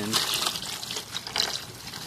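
Water from a garden hose pouring and splashing into a shallow plastic basin of water, churned by a hand working a plastic bag in it.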